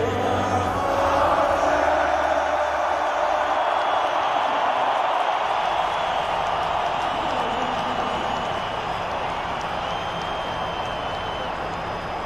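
Large stadium crowd cheering in a steady roar that swells about a second in and slowly eases off, with the last of the music fading out in the first few seconds.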